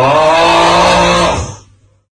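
A loud buzzing tone that rises briefly in pitch as it starts, holds steady for about a second and a half, then fades out.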